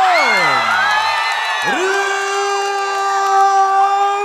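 A man's long, drawn-out call through the arena loudspeakers, holding one pitch, sliding down about a second in, then held again on a steady note, over a cheering crowd.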